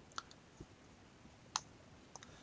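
Faint clicks of a computer mouse: one just after the start and a second about a second and a half in, with a fainter tick between, over quiet room tone.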